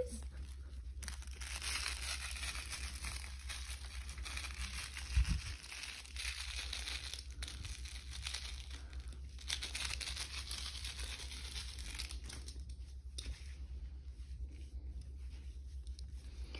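Schnauzer puppies scuffling and tugging at plush toys on a carpet: a rough rustling, scraping noise that comes and goes, with a dull thump about five seconds in.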